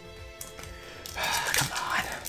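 Foil booster pack wrapper crinkling as it is torn open, starting a little over a second in, over quiet background music.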